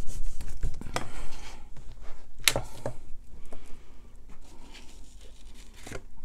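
A rubber stamp rubbed and pressed firmly onto cardstock with a hand-held pressing tool, a rasping rub for about the first second and a half. Then come a few sharp clicks and taps as the stamp positioner's hinged lid is lifted and the card is handled, with light paper handling sounds after.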